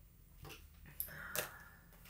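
A deck of tarot cards shuffled by hand: a few soft taps and a couple of sharp card clicks about a second in, with a short rustle between them.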